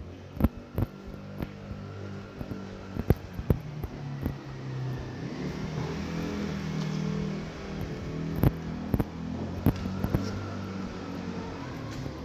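Irregular footsteps knocking on a concrete floor, over the low hum of a motor vehicle's engine that swells to its loudest around the middle and eases off toward the end.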